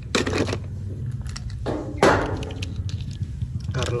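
Die-cast toy cars clattering against each other and a metal basin as a hand rummages through them: a few rattling bursts, the loudest about halfway through, amid small clicks.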